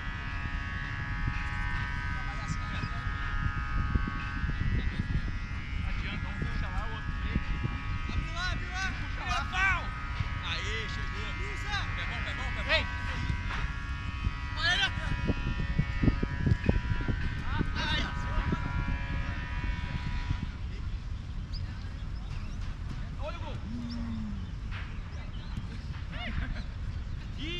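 Outdoor football-pitch ambience: wind rumbling on the microphone, with players' distant shouts and calls. A steady motor drone runs underneath and stops about twenty seconds in.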